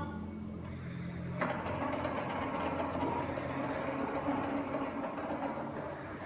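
Asus Zenbo robot's small drive motors whirring as it turns and rolls across a tiled floor. A steady low hum at first, with the whir growing fuller about a second and a half in.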